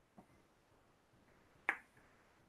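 A single sharp click about one and a half seconds in, with a fainter click near the start, over quiet room tone.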